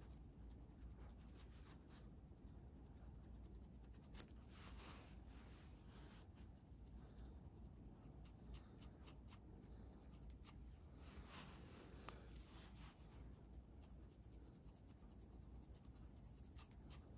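Faint scratching of a wooden comb and fingernails on a dry, flaky scalp, in irregular light scraping strokes with one sharper tick about four seconds in; the strokes loosen dandruff flakes.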